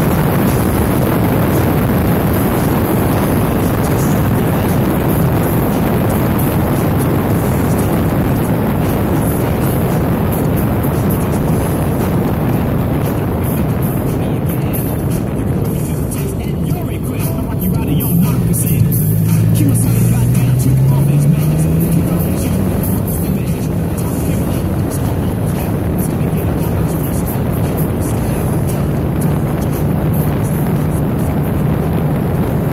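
Motorcycle riding at road speed: steady wind rush on the microphone with the engine running underneath. About halfway through the wind eases as the bike slows, then the engine note rises as it accelerates away, and the steady wind noise returns.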